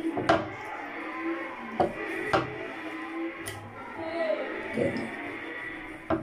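A kitchen knife slicing raw chicken breast on a wooden cutting board, with a few sharp knocks as the blade meets the board.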